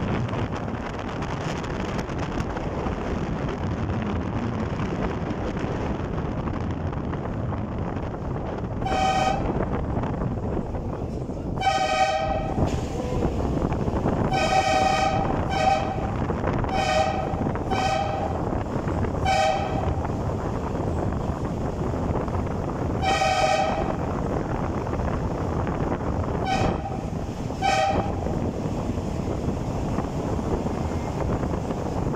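Car horn with a two-note sound, honked about ten times in short blasts, over the steady road and wind noise of the moving car, inside a rock tunnel. The honking warns oncoming traffic on a one-lane tunnel road.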